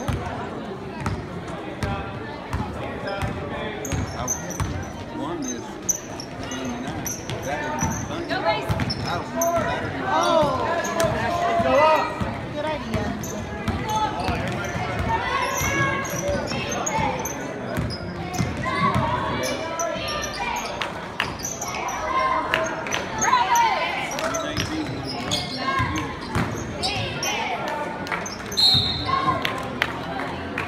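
A basketball dribbled on a hardwood gym floor, with repeated bounces, under indistinct voices of players and spectators echoing in the gym.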